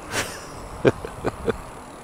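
Riding noise from an e-bike rolling slowly on tarmac: an even rush of wind on the microphone and tyre noise, with a few brief louder sounds in the middle.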